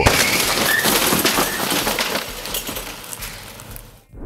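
A garage door smashed by a reversing SUV: a sudden crash with breaking panels and glass, clattering and fading away over a few seconds.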